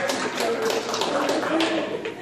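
Jump rope slapping the rubber gym floor in a quick, even rhythm of about four ticks a second, as an athlete does double unders, with voices around it.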